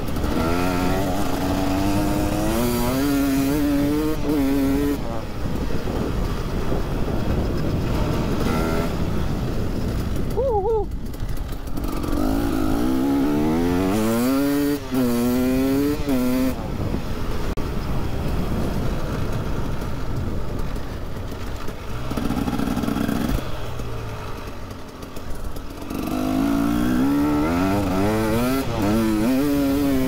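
KTM EXC 300's single-cylinder two-stroke engine being ridden, its pitch climbing and falling in repeated sweeps as the rider works the throttle, with quieter stretches off the throttle about a third of the way in and again near the end.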